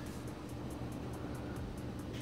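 Steady low hum and hiss of a running reef aquarium's pumps and fans.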